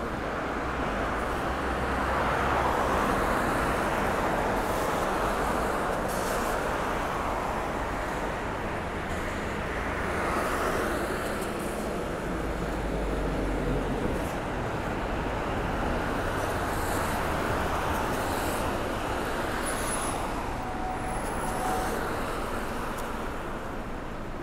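City road traffic on a wet street: cars pass with a steady tyre hiss that swells and fades every few seconds.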